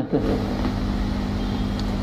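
A steady low hum and rumble from a running motor, holding an even pitch throughout.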